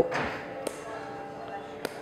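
Side snips cutting nylon cable ties: two sharp snips about a second apart, the first at under a second in.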